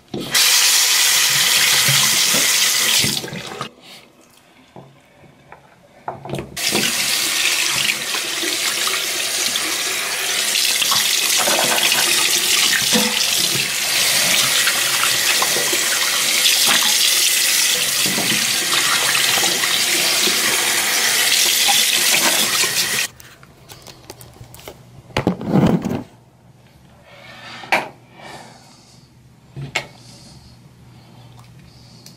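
Water running from a bathroom faucet into the sink basin while mouth and teeth are rinsed. It runs for about three seconds, stops briefly, then runs again for about sixteen seconds before being turned off. A short louder sound and a few small clicks follow near the end.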